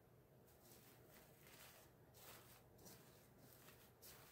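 Near silence with faint, intermittent rustling of paper shred being tucked by hand into the top of a diaper cake.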